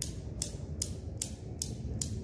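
Newton's cradle with five steel balls clicking as the end balls strike the row in turn, each impact passing through to swing out the ball at the far end. Sharp, evenly spaced clicks, about two and a half a second.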